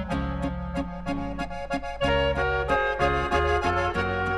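Slovenian Oberkrainer-style folk band playing an instrumental passage, the accordion to the fore over a steady bass and rhythm accompaniment with an even beat.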